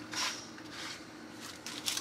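Small paperboard product box being opened and a clear plastic case slid out of it: light scraping and rustling of cardboard against plastic, with a few soft clicks near the start and again near the end.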